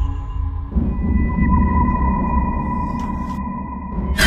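Eerie background music: a low rumbling drone under long held high tones.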